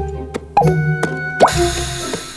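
Cartoon water-drop sound effects, two short rising plops, the second louder, as the last drops fall from a water skin, over background music.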